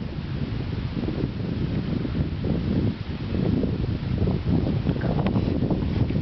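Wind buffeting the camera microphone: a steady, uneven low rumble with no clear single events.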